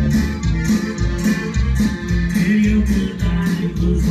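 Live regional Mexican band music with a steady beat, bass pulses and a singing voice.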